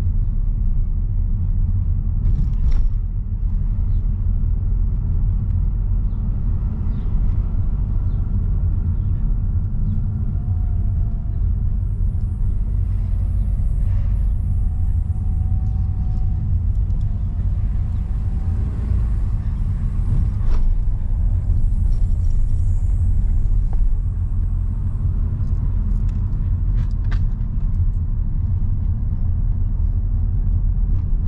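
Steady low rumble of a car's road and engine noise heard from inside the cabin as it drives slowly, with a few faint knocks.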